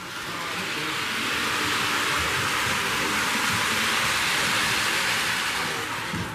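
Model train locomotive running along the layout track close by, a steady noise of wheels and motor that builds over the first couple of seconds and fades near the end as it passes.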